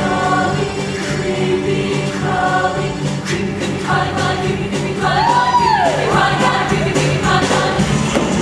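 Mixed show choir singing with instrumental backing and a steady beat. About five seconds in, a high sliding note rises and falls in an arch over the chords.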